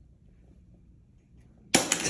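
Near-silent room tone, then a sudden loud burst starts near the end and stays loud.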